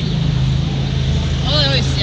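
A steady low engine hum, with a person's voice speaking briefly near the end.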